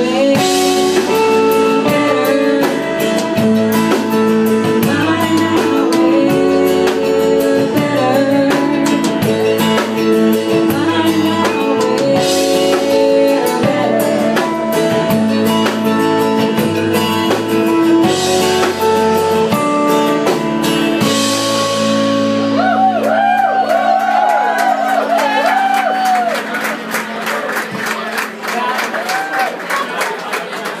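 Live band playing a folk-rock song: strummed acoustic guitar, bass and drum kit under sung vocals. Near the end the band thins out and the song winds down.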